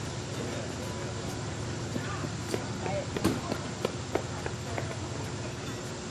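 Outdoor arena ambience: a steady low rumble with faint voices and a few sharp clicks in the middle.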